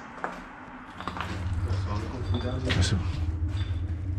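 Low rumbling handling noise from a handheld camera being carried and swung about, with a couple of sharp knocks early on and a brief voice near the end.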